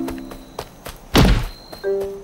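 Cartoon sound effect: a quick falling whoosh ending in a single deep thunk a little over a second in, over light background music.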